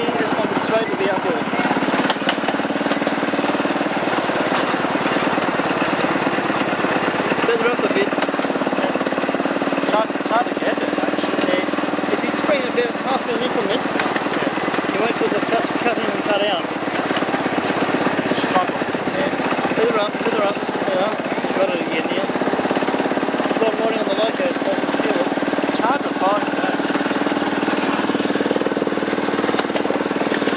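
Terrier locomotive of a ride-on miniature railway running along the track, a steady, rapid, even beat with running noise that holds throughout. Short gliding calls sound over it now and then.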